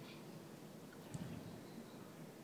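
Faint water sloshing and lapping around bodies being moved slowly through a swimming pool, with one soft low swish a little past a second in.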